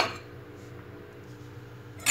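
Quiet room tone with a faint steady low hum, just after a short clink of a spoon on a glass bowl that fades at the very start.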